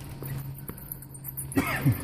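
Steady low hum with a couple of faint clicks, then a man's short laugh with a falling pitch near the end.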